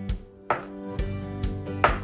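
Chef's knife cutting through a block of Spam and knocking down onto a plastic cutting mat over a wooden board, twice, the second knock near the end louder. Background music plays underneath.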